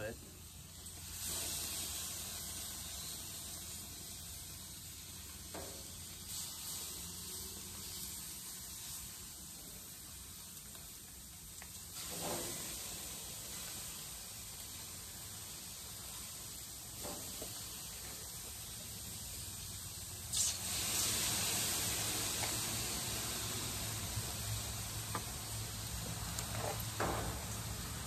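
Chicken breasts sizzling on the hot grates of a preheated gas grill: a steady hiss, louder from about twenty seconds in, with a few faint knocks as pieces are laid down.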